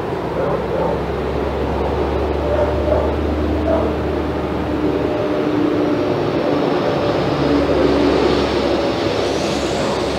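A steady mechanical drone, like engine noise, with a low hum that drops away about halfway through and a faint high whine that rises near the end.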